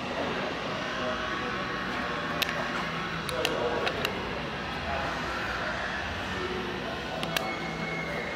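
Indistinct background voices and music, with a few sharp clicks.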